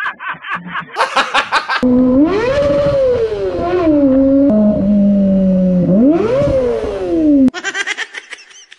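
Motorcycle engine revved hard: starting suddenly about two seconds in, a high pitched whine climbs steeply, falls back, holds at a lower pitch, then climbs again before cutting off shortly before the end.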